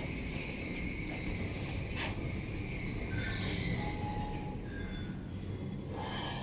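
Traction elevator car travelling in its shaft: a steady running hum and hiss with a faint high whine, a single click about two seconds in and another near the end as the car reaches the floor.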